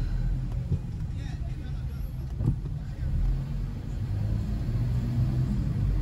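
Car being driven with the windows open: a steady low engine and road rumble heard from inside the cabin, with outside street noise coming in through the open windows.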